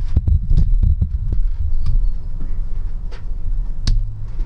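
Low, throbbing rumble with a few scattered soft clicks: handling noise from a handheld camera as it is moved along the wall.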